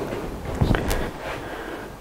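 Handling noise from hands working at a wood lathe's pulley housing and drive belt: a rustle, with a soft knock and a short click a little under a second in.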